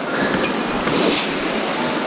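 Steady rush of a small snowy mountain stream flowing over its bed, with a brief brighter hiss about a second in.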